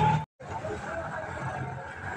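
Busy street background: traffic and people talking, with no close voice. The sound cuts out for an instant about a third of a second in.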